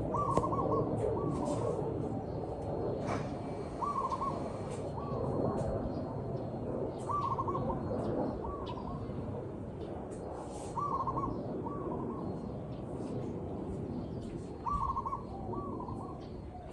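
Zebra dove cooing: a short trilled phrase followed at once by a shorter second one, the pair repeated about every three to four seconds, over a steady lower background noise.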